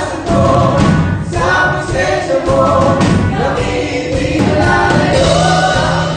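Live worship band playing a Tagalog praise song: a woman sings the lead into a microphone, with other voices joining, over electric guitar and keyboard accompaniment.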